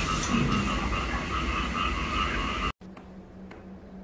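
A steady, evenly pulsing chorus of animal calls that cuts off abruptly a little under three seconds in. After the cut there is low-level room sound with a faint steady hum.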